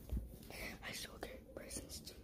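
A child whispering close to the microphone in a few short breathy bursts, with a low bump near the start.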